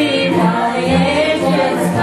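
Several women singing a gospel song together in held, flowing notes, with a steady low pulsing beat underneath.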